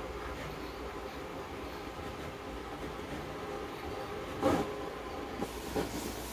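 Vinyl cutting plotter running as it cuts a sticker design, its carriage and roller motors whirring steadily, with two short clacks, one about four and a half seconds in and one near the end.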